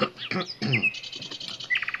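A small bird singing: a few quick chirps, then two fast trills, the second one lower in pitch near the end.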